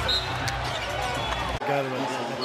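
Basketball arena game sound during live play: a steady crowd and arena rumble with a ball bouncing on the hardwood court. It cuts off abruptly about one and a half seconds in, as the broadcast jumps to another moment.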